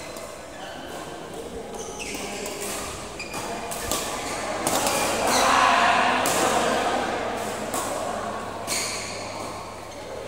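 Badminton rackets striking shuttlecocks: a string of sharp, irregularly spaced cracks echoing around a large hall, over a murmur of players' voices that grows louder in the middle.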